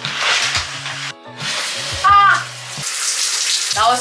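Shower running: a steady hiss of water spray, briefly interrupted just after a second in, under background music.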